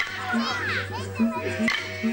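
Didjeridu droning steadily with a rhythmic pulse in its tone, with a few sharp clapstick strikes, the eastern Arnhem Land dance-song accompaniment. High voices, a child's among them, call out with sliding pitch over it in the first half.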